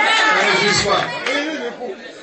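Several people's voices talking over one another, dying down about a second and a half in.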